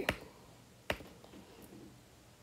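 Two short, sharp clicks about a second apart over faint room tone.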